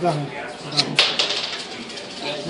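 Indistinct voices, with a sharp clatter about a second in that trails off into a quick run of clicks.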